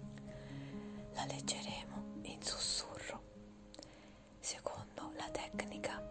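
Soft whispering in short phrases over quiet background music of slow, held notes.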